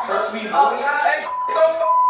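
People talking, with a steady one-pitched beep coming in about halfway through and covering the words: a censor bleep over swearing.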